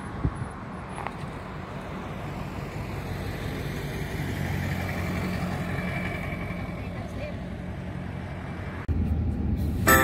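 Road traffic: vehicles running and passing by on the road, with faint background voices. About nine seconds in, the sound cuts abruptly to the steady hum of a moving car.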